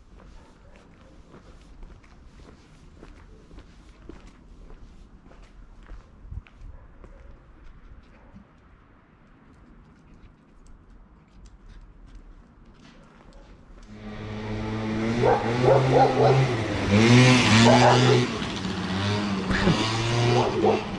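Faint footsteps on a paved lane, then about two-thirds of the way in a group of stray dogs breaks into loud, ragged barking that runs on to the end.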